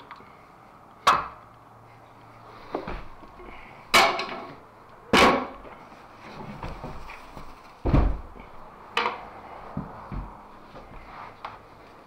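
Irregular knocks and clanks of hand tools, a locking C-clamp and a screwdriver, being handled and set against a window sill. There are about eight sharp strikes, unevenly spaced, the loudest around one, four, five and eight seconds in.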